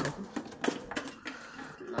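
Metal kitchen utensils clinking and rattling as a cluttered utensil drawer is rummaged through: a run of sharp, irregular clicks.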